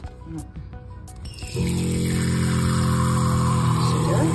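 Water running hard from a tap into a small metal pot, starting a little over a second in, with a steady electric hum joining it just after.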